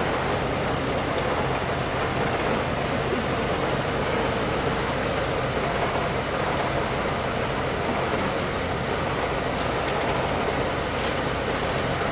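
Steady outdoor background noise, an even rush with a low hum underneath, with a few faint sharp clicks now and then.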